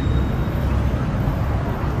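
Steady low rumble of road traffic, with no sudden sounds.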